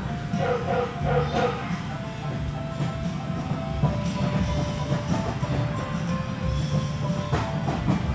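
Background music and electronic game tones from arcade machines over a steady low rumble: a few quick repeated beeps in the first second and a half, then longer held tones.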